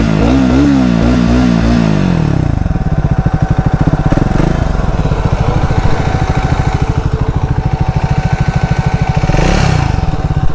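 Triumph Speed 400's single-cylinder engine revved in several quick throttle blips, each rising and falling in pitch. It then settles into a steady, evenly pulsing idle, with a slight rev near the end.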